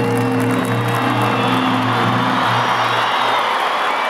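A national anthem's final sustained notes play over the stadium sound system and stop about three and a half seconds in, while a large stadium crowd cheers and applauds, swelling toward the end.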